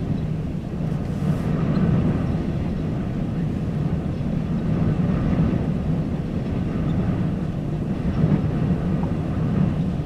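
Strong wind buffeting the microphone: a steady low rumble that rises and falls in gusts.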